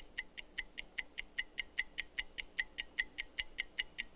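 Game-show countdown timer sound effect: a steady, even run of sharp ticks, about six a second, marking the contestants' answer time running out.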